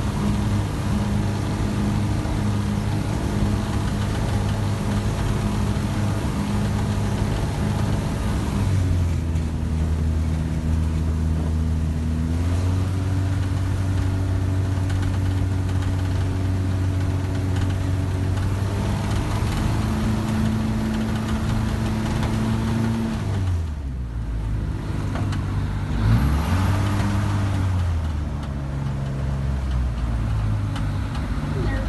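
Light aircraft's piston engine and propeller running at taxi power, heard from inside the cockpit. The engine speed drops about nine seconds in, picks up around twelve and twenty seconds, falls back near twenty-three seconds, and gives a brief rev up and down a few seconds later before settling lower.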